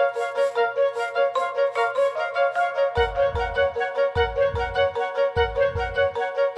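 Background music: a quick, steady run of repeated high-pitched notes, about five a second, with deep bass beats joining halfway through at roughly one a second.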